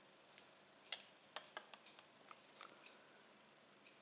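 Faint, scattered clicks and ticks of a plastic Blu-ray case being handled in the hand, about a dozen of them bunched from about one to three seconds in.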